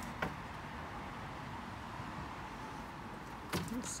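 Steady background hiss of room tone, with one faint click shortly after the start.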